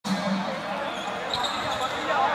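Echoing gym sound of a ball bouncing on the hardwood court, with voices in the hall.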